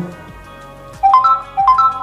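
Realme Narzo 20A smartphone giving a short electronic chime as it finishes starting up: a quick run of three rising notes, played twice about half a second apart, over soft background music.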